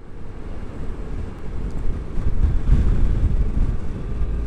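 Wind buffeting the microphone of a helmet-mounted action camera on a moving motorcycle: a low, gusty rumble with road and engine noise underneath. It fades in at the start.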